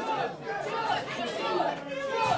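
Several people talking and chattering in a room, with no other sound standing out.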